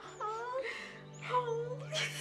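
Voices cooing a drawn-out "aww" over a newborn puppy, in short rising and falling glides, with soft background music holding a low sustained note.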